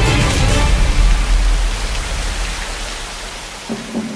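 Light-show soundtrack: music in the first second gives way to a steady rushing noise like running water, which fades toward the end. A sudden sound comes just before the end.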